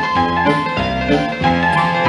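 Solo piano playing a lively medley of familiar songs, with chords struck several times a second.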